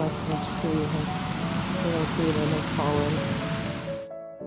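Steady hiss of rain, with a faint voice wavering through it.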